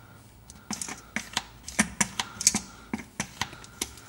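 Hand-operated gear oil pump clicking and clacking as it is stroked, sending gear oil through a tube into a differential's fill hole. It is a quick, uneven run of sharp clicks, about three or four a second, starting just under a second in.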